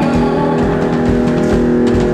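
Live rock band playing loudly: distorted electric guitar holding sustained notes over drum hits.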